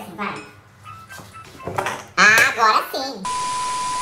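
A man's voice exclaiming loudly, then cut off by a steady electronic beep of under a second near the end, the kind of tone laid over a word to bleep it out.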